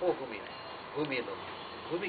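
A man's voice in two short spoken bursts, one at the start and one about a second in, over a steady background hiss.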